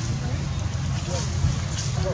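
Steady low rumble with faint distant human voices.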